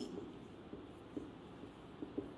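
Whiteboard marker writing on a whiteboard: faint strokes of the marker tip on the board, with a couple of light ticks.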